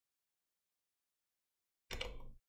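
Near silence, with the audio gated to nothing, then a brief sudden sound starting just before the end.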